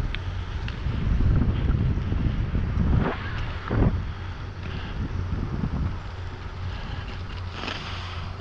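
Wind buffeting an action camera's microphone on a moving bicycle, with rumble from the tyres on rough, cracked pavement. A couple of short knocks come a little after three seconds in, as the bike jolts over the broken surface.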